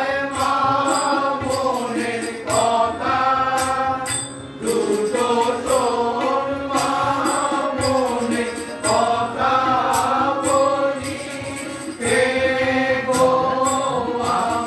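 Bengali devotional kirtan to Kali: long, held sung phrases that slide in pitch, a new line beginning every few seconds, with tabla and sharp metallic percussion strikes keeping a steady beat.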